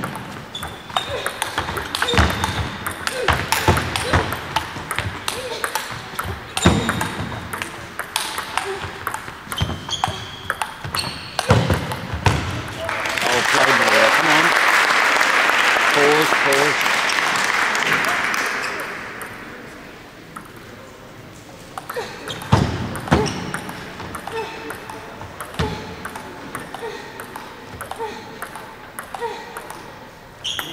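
Table tennis ball clicking off bats and the table in quick runs of hits, in two rallies. Between the rallies, about halfway through, a steady rush of noise swells for about six seconds and then fades.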